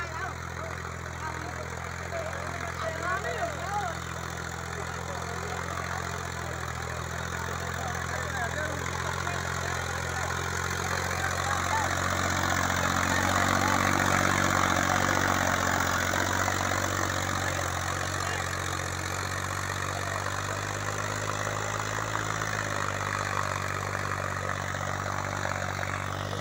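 Massey Ferguson 244 DI tractor's three-cylinder diesel engine running steadily while pulling an 11-tine cultivator through the soil. It grows louder as the tractor comes close, loudest about halfway through, then eases off somewhat.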